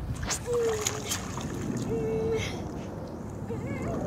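Pool water splashing and lapping as a child swims, with two short hummed notes.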